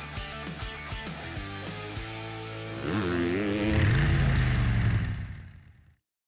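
Background music with a steady beat. About three seconds in, a motorcycle engine revs up and holds, louder than the music, then everything fades out.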